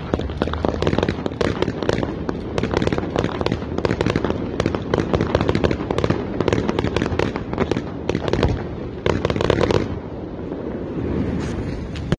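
Fireworks and firecrackers going off in a dense, continuous rapid crackle of bangs and pops, with a louder cluster of bursts about three-quarters of the way through, thinning a little after it.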